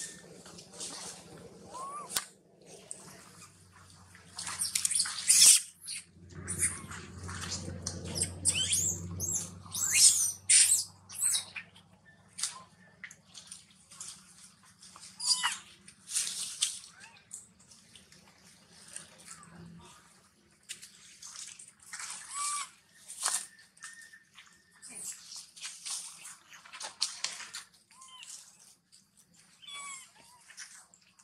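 Young macaques squeaking and screeching in short, high-pitched bursts at irregular intervals, with a steady low hum underneath that cuts off about twenty seconds in.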